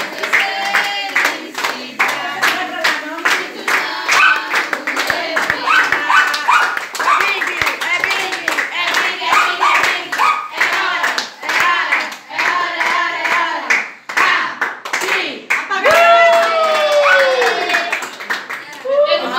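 A group of people clapping in time while voices sing and chant together, as in the birthday song around a cake. A long falling shout comes near the end.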